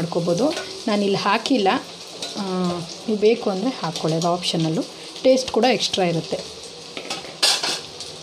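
Chicken kababs deep-frying in oil in a steel kadai, sizzling steadily, while a wire skimmer stirs them and clinks and scrapes against the pan. A voice talks over it at times.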